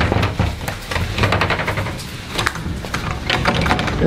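Rapid knocking and rattling on a wood-framed glass door, in several quick bursts, over a low rumble of camera handling.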